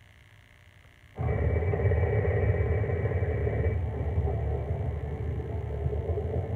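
A deep, steady rumble from the video's soundtrack, played through a TV and recorded off the screen. It starts abruptly about a second in after near silence, with a higher hiss-like layer that fades out partway through.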